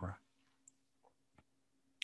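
Near silence under a faint steady hum, with two or three faint clicks around the middle.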